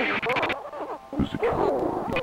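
Music breaks off about half a second in, leaving a man's wordless, wavering vocal sounds until the music comes back at the very end.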